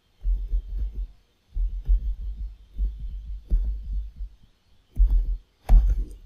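Computer keyboard being typed on, heard as irregular runs of low, dull thumps.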